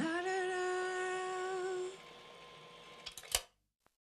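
A voice holds one hummed note for about two seconds, sliding up into it at the start. Near the end come a few sharp clicks, one louder than the rest, and then the sound cuts off.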